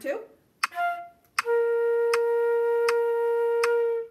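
A concert flute plays a short note, then one long steady held note on B-flat about a second and a half in, lasting to the end. Sharp metronome clicks at 80 beats a minute tick about three-quarters of a second apart under the held note.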